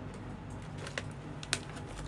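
Plastic packaging of a stack of rice paper sheets being handled and set aside, giving a few short, sharp crinkles and ticks; the loudest is about one and a half seconds in.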